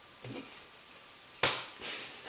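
A single short knock about one and a half seconds in, from a wooden axe handle being handled against the axe head on a workbench, amid faint handling noise.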